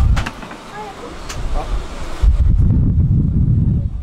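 Passenger stepping off a city bus at a stop: a knock at the start and a few short voices, then a loud low rumble for nearly two seconds from about halfway in.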